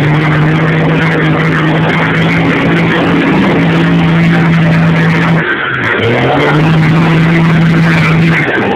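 Diesel pickup truck engine held at high revs, running steady, with a brief drop in revs about five and a half seconds in before it climbs back up.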